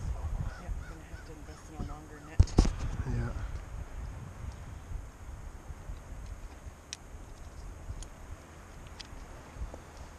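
A bird calling repeatedly over the first few seconds, with a single sharp knock about two and a half seconds in, over a low steady wind rumble.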